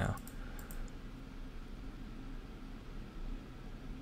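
A few light computer clicks in the first second, then a steady low hum of room tone.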